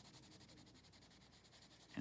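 Near silence with faint, steady rubbing of an oil pastel being worked back and forth across paper.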